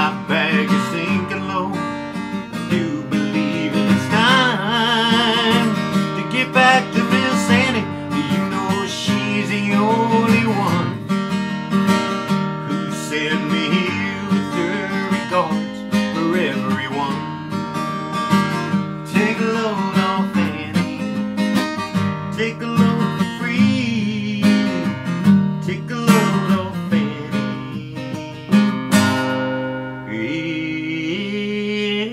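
Acoustic guitar with a capo on the neck, playing an instrumental passage of strummed chords.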